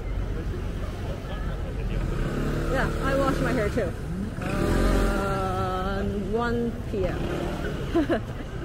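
City street ambience: a steady traffic rumble as a car and a motor scooter pass close by, with nearby passersby talking over it, loudest in the middle.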